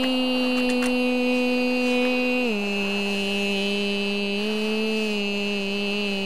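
A person humming one long, steady wordless note that steps down to a lower pitch about two and a half seconds in, then lifts slightly for a moment before settling again.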